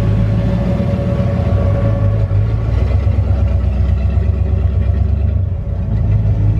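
Engine idling: a loud, steady low rumble with a fast, even pulse in its lower part from about halfway through.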